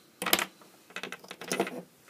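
Hard plastic clicks and knocks as a lamp is worked out of its white plastic lampholder and the pieces are set down on a wooden bench: one sharp click, then a quick run of smaller clicks.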